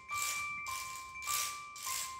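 Children's small classroom ensemble playing: ringing glockenspiel-like notes that alternate between two close pitches, over a shaker shaken about twice a second.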